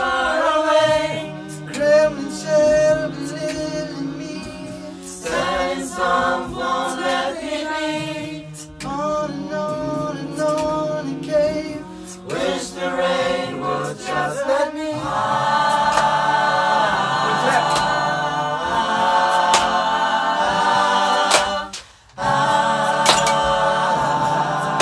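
Mixed choir of men and women singing a cappella in several parts. About halfway through the voices move into fuller, held chords, break off briefly near the end, then come straight back in.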